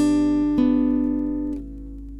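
Acoustic guitar fingerpicked: two plucked notes, at the start and about half a second in, ring out and fade, going quieter near the end.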